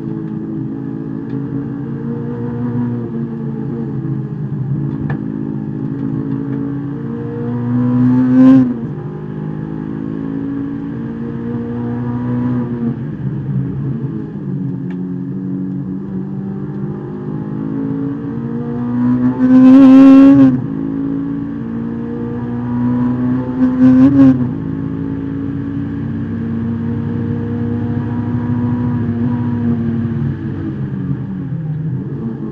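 Honda S2000's four-cylinder VTEC engine heard from inside the cabin under racing load, its pitch rising and falling as the revs climb and drop through the gears. Three louder surges stand out, the revs climbing high before falling away.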